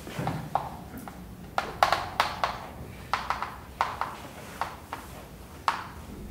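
Chalk writing on a blackboard: a run of sharp taps and clicks, a few a second, beginning about a second and a half in.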